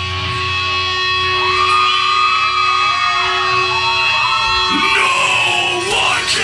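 Live heavy metal band playing loud: distorted electric guitar holding sustained notes that bend up and down in pitch.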